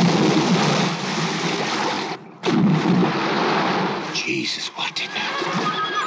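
Heavy churning and splashing water from a large animal thrashing at the surface, dropping out briefly about two seconds in and breaking into sharp splashes near the end.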